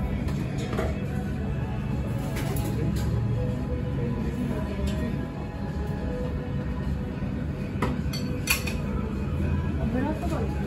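Ceramic dishes and a spoon clinking a few times, sharpest about eight and a half seconds in, over steady background music.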